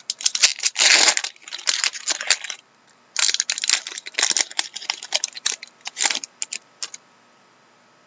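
Crinkling and tearing of thin trading-card packaging handled close up, in two runs of crackling with a short break about two and a half seconds in.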